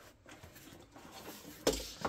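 Faint rustling as items are handled in a cardboard shipping box, then a single dull thump near the end as something knocks against the box.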